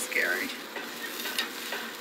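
Food frying with a steady sizzle on a hot cooking surface, the pieces cooked hard enough to burn.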